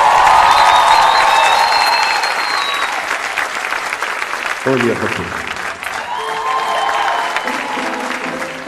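Studio audience applauding and cheering. The applause is loudest at first and dies down gradually.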